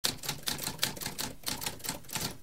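Typewriter typing: a quick run of keystrokes, about six a second.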